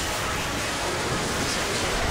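A steady wash of harsh noise like static, spread evenly from low to high with no clear tones or rhythm.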